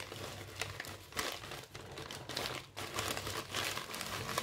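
Plastic rustling and crinkling as a fashion doll and small plastic toys are handled: a quick, irregular run of crinkles and rustles.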